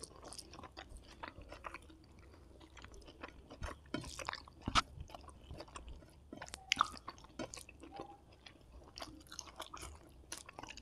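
Close-miked chewing of rice and squid roast eaten by hand: irregular wet mouth clicks and smacks, with a couple of louder ones in the middle.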